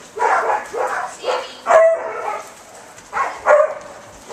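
Dogs barking and whining in several short calls, close by.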